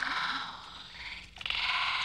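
Croak-like calls: two rapid, pulsing rasps, a short one at the start and a longer one beginning about one and a half seconds in.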